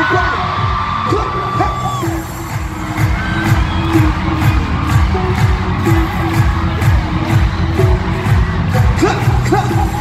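Loud pop dance music with a steady beat playing over arena speakers, with fans screaming and cheering over it; the track thins out about two seconds in and comes back fuller about a second later.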